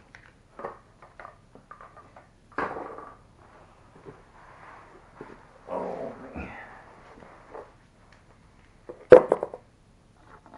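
Scattered knocks, clatter and rustling from handling tools and shifting about on a wooden floor beside a bicycle on a trainer. A sharp click, the loudest sound, comes about nine seconds in, as a small red tool case is handled.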